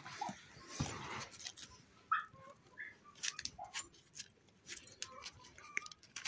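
Young raccoons chewing dried treats, faint and irregular clicking and rustling, with several short high squeaks scattered through.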